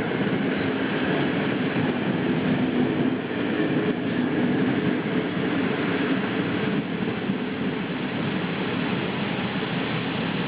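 Passenger coaches of an Intercity express train rolling past: a steady rumble of wheels on rail that eases slightly in the last few seconds as the end of the train draws away.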